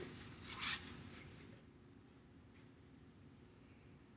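A crayon scratching briefly on paper about half a second in, then faint room tone with a small tick.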